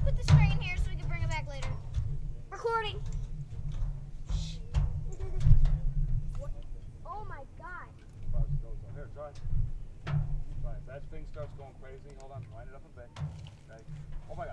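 Indistinct voices talking on and off over a steady low rumble.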